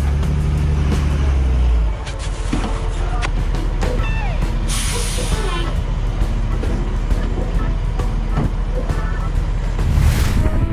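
Heavy diesel of a compactor garbage truck idling close by in traffic, a strong low drone that drops back after about two seconds. About five seconds in comes a short hiss of air from its air brakes, over background music.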